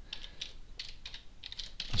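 Typing on a computer keyboard: a quick run of keystrokes as a word is typed.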